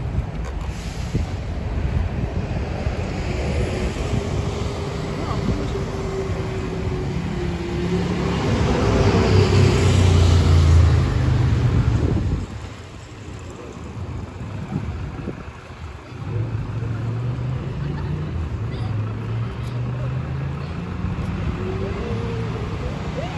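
City street traffic with wind buffeting the microphone in gusts. A vehicle passes close a little before halfway, swelling and fading with a faint gliding engine tone.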